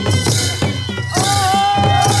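Dance music for the Bhume dance: a drum keeping a steady beat with cymbal crashes. About halfway through, a long high held note comes in over the beat.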